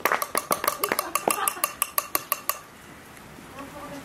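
A small group clapping in a quick, even rhythm: a short round of applause that stops about two and a half seconds in, with voices underneath.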